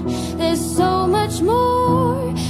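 Slow pop ballad: a woman singing a gliding melody over steady sustained accompaniment.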